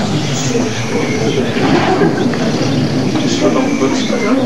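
Indistinct, overlapping voices over a steady background rumble, with no single clear word or event.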